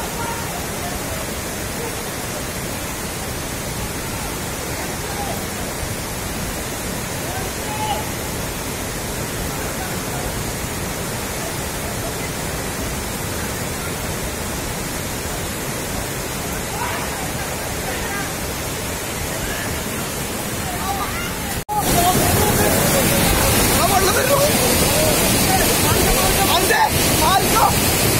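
Muddy floodwater rushing down a road, a steady wash of noise. After a sudden cut about three-quarters in, the rushing is louder and closer, with people's voices over it.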